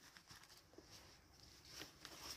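Near silence, with only a few faint ticks and a slight rustle near the end.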